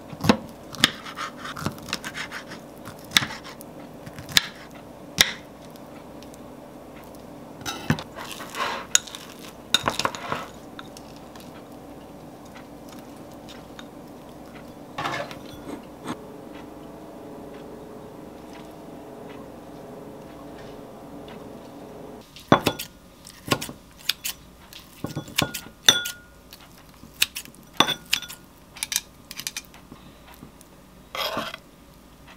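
A kitchen knife cutting an avocado on a wooden board and ceramic dishes and utensils clinking, in scattered knocks and clinks. Under them a steady hum from a microwave oven heating chicken breast runs until it stops suddenly about two-thirds of the way through.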